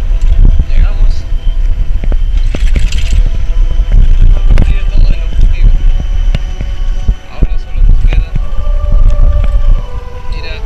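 Heavy wind buffeting on the microphone of a camera held out from the open bed of a pickup truck on a dirt road, with the truck's rumble and frequent knocks and jolts from the rough track.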